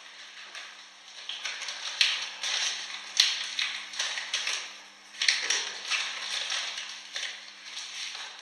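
Irregular light taps and clicks with rustling, from small objects being handled on a desk, the sharpest clicks about two, three and five seconds in.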